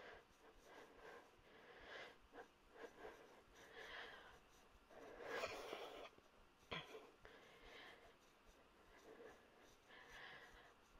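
Near silence: room tone, with a brief faint noise about halfway through and a soft click shortly after.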